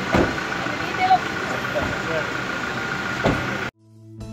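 Outdoor traffic and crowd din beside a car, with scattered voices over a steady background and two short thumps, one just after the start and one near the end. It cuts off suddenly to silence shortly before the end.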